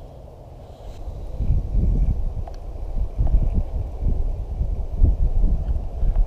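Wind buffeting the microphone: a gusty low rumble that builds about a second and a half in and keeps coming in uneven gusts, with a few faint clicks.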